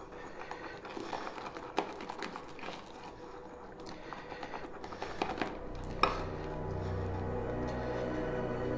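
Shaving brush working lather around the inside of a mug, giving soft swishing and small clicks as the brush and handle knock the mug's sides. Background music fades in about five and a half seconds in.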